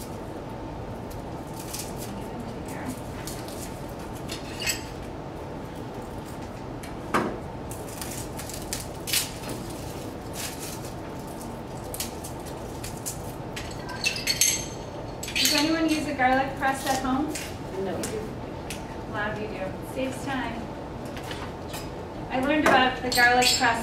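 Scattered clinks and taps of kitchen utensils and dishes on a table, over a steady faint hum. Low voices come in about two-thirds of the way through.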